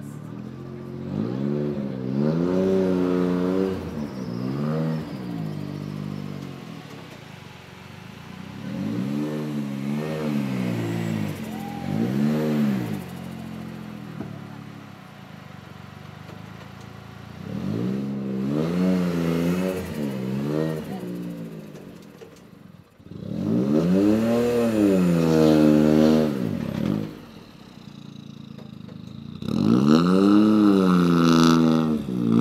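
Ford Fiesta rally car's engine revved in short bursts, each rev climbing and then falling in pitch, with the engine idling between. The longest and loudest rev comes near the end.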